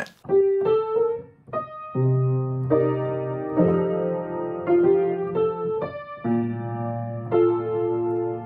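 Upright piano played with both hands, going through a tune's chord changes: a few single notes first, then held chords with a bass note from about two seconds in, changing about once a second.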